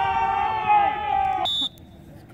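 A spectator's long, held shout: one loud, high, sustained yell lasting about two seconds that sags slightly in pitch and cuts off abruptly about a second and a half in.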